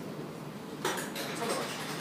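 Dishes and cutlery clinking, a scatter of light clinks starting just under a second in.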